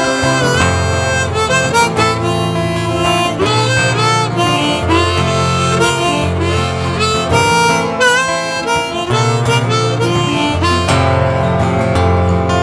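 Harmonica playing a melodic instrumental break over strummed acoustic guitar, some of its notes bending in pitch.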